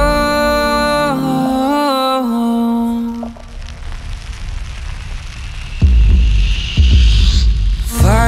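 A cappella nasheed made only with voices and hands: layered male vocal harmonies over a low hummed drone hold the word "Oh..." for about three seconds. The voices then drop away to a quiet, breathy swell that rises toward the end, with two deep booms about six and seven seconds in.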